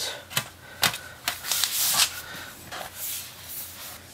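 Aluminium bottom case of a MacBook Pro being laid back on and pressed into place by hand: several sharp clicks and light taps, with a short scraping rustle in between.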